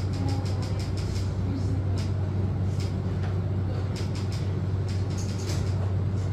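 Light clicks from a laptop's keys being pressed, a quick run in the first second, then scattered, irregular clicks, over a steady low hum.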